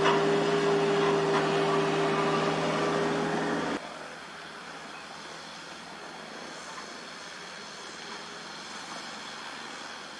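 Steady diesel engine drone from working excavators, with one strong held pitch, cutting off abruptly about four seconds in and leaving a quieter steady hiss with a faint high whine.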